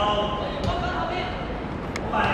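Voices calling out across an outdoor football pitch, with two short thuds of a football being struck by a dribbling player's foot, about a second and a half apart.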